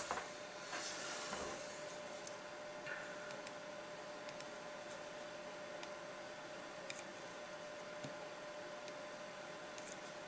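Quiet room tone: a steady hiss with a faint steady hum. There is a brief rustle about a second in, then a few faint, scattered clicks.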